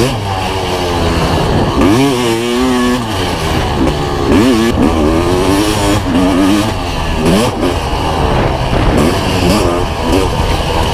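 Kawasaki KX500's two-stroke single-cylinder engine under hard riding, its pitch climbing and dropping about four times as the throttle is opened and rolled off.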